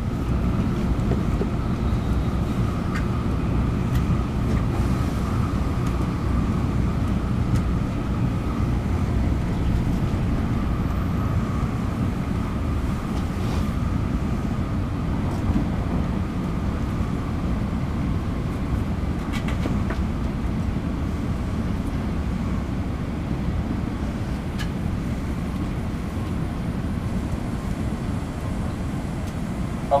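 Cabin noise of an N700-series Shinkansen running at speed: a steady deep rumble from the running gear and rails, with a faint high whine that fades after the first ten seconds or so. The level eases slightly as the train nears Shin-Osaka.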